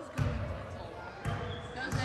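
Basketball bouncing on a hardwood gym floor: three bounces, the first two about a second apart and the third coming quicker.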